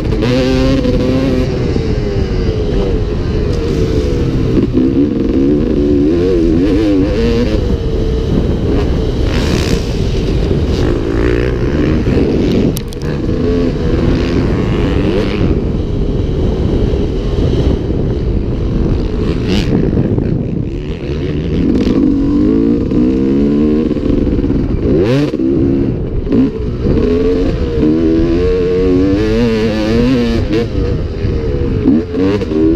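2002 Honda CR250R single-cylinder two-stroke motocross engine, ridden hard around a dirt track. The revs climb and fall over and over through the gears. Twice the sound drops off briefly, about a third and two-thirds of the way through.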